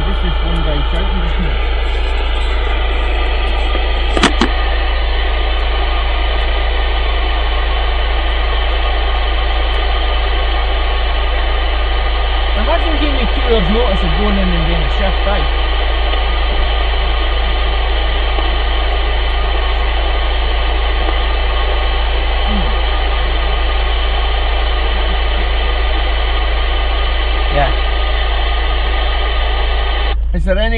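CB radio receiver with the squelch open: loud steady static and a low hum, with faint, weak voices of a distant station coming and going underneath, most audible around the middle. A single sharp click about four seconds in.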